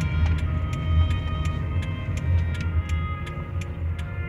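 Low rumble of a car driving, heard from inside the cabin, under music with sustained melody notes and an even ticking beat of about three to four ticks a second.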